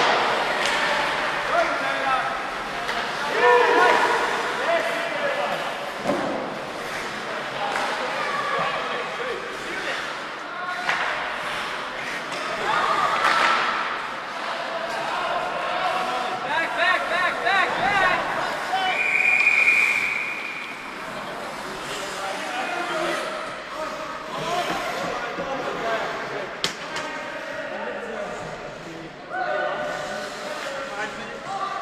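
Ice hockey play in an indoor rink: shouting voices and sharp slams of the puck and bodies against the boards, echoing in the hall. About two-thirds of the way through, a steady single-pitched referee's whistle sounds for about a second and a half.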